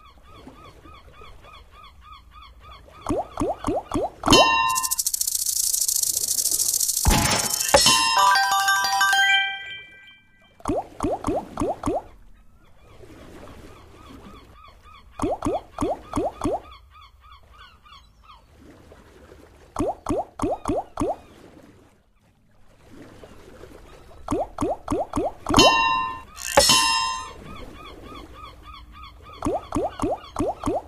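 Big Bass Splash video slot game audio over its background music: each free spin ends with a quick run of five clicks as the reels stop, about every four to five seconds. About five seconds in, a loud hissing burst with bright chime tones plays for a few seconds.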